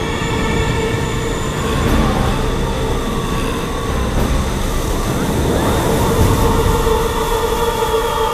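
Whirlwind sound effect: a loud, steady rumble of rushing wind, with sustained pitched tones held above it.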